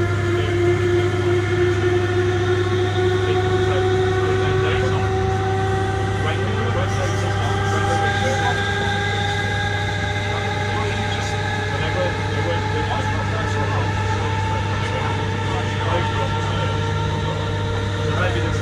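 Inside the saloon of a British Rail Class 317 electric multiple unit under way: whine from the traction motors and gears in several tones rising slowly as the train gathers speed, over a steady low hum and the rumble of running on the track.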